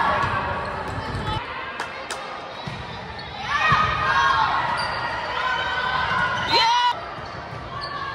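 Indoor volleyball play on a hardwood court: the ball being hit with sharp thuds, sneakers squeaking on the floor, and players calling out.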